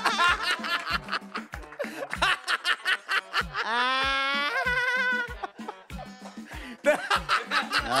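Two men laughing over background music with a steady beat; a high-pitched, wavering laugh rises and falls about four seconds in.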